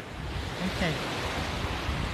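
Small waves breaking and washing up on a sandy beach, with wind on the microphone. A brief voice sound comes a little under a second in.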